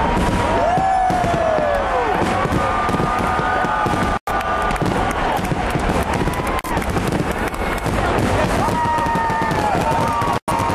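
Large fireworks display: a continuous barrage of bangs and crackling from bursting aerial shells, with a crowd's voices calling and shouting over it. The sound cuts out for an instant a little past four seconds.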